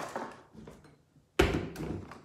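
Small gear being handled and set down on a wooden tabletop: a knock at the start, a quiet pause, then a louder knock about one and a half seconds in.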